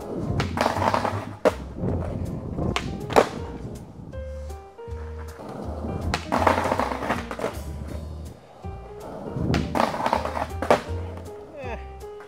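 Skateboard wheels rolling on a concrete parking-garage floor, and the board hitting a concrete curb during trick attempts, with several sharp clacks of pops, truck hits and landings. Background music with a steady bass plays underneath.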